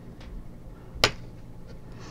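Faint handling ticks from crocheting with a metal hook, with one sharp click about a second in, the loudest sound, over a low steady hum.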